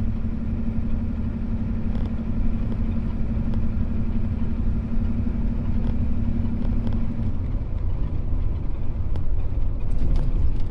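Ford 7.3 L IDI V8 diesel engine running while the pickup drives, heard as a steady low rumble inside the cab with road noise. A steady hum in the drone drops away about seven seconds in.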